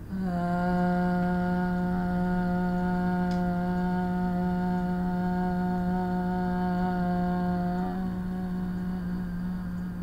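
A woman's voice sings one long, steady note, held as long as her breath lasts as a test of breath capacity. It settles on its pitch right away, holds steady for about eight seconds, then thins and fades as her air runs out near the end.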